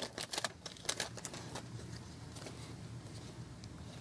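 Foil trading-card pack wrapper crinkling as cards are pulled out and handled: a few short sharp crackles in the first second and a half, then faint rustling.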